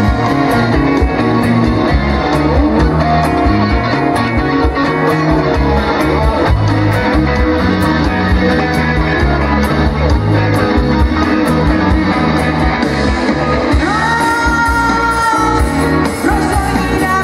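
Live rock band playing: electric guitar, bass guitar and drum kit keeping a steady beat, with a held sung note coming in near the end.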